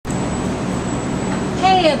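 Steady background noise with a low hum and a faint high-pitched whine. A woman starts speaking near the end.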